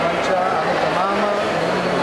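Speech: a man talking, with background chatter of other voices.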